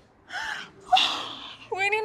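A young woman gasps twice in surprise, the second gasp louder. Near the end she breaks into a high, rising vocal exclamation.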